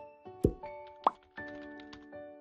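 A short, bright outro jingle of keyboard-like notes, with a quick downward-gliding pop about half a second in and a rising blip about a second in.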